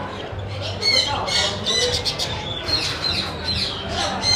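Caged cockatiels squawking: a string of harsh, repeated calls that start about a second in, several overlapping.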